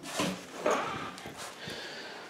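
A few soft knocks and rustles from a handheld camera being moved, with two clearer knocks in the first second.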